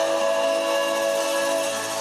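Pan flute playing a melody in long held notes, with other instruments sounding underneath.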